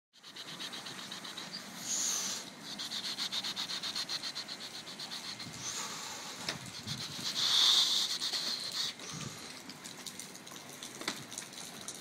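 Hand truck loaded with beer cases being wheeled over wet pavement, with a fast, even rattle that swells louder a couple of times.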